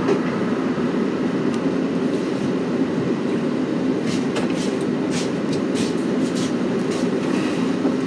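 A steady low machine rumble runs throughout. From about halfway, a few light clicks and knocks come as a plastic pitcher of brewed coffee is set down on a digital kitchen scale.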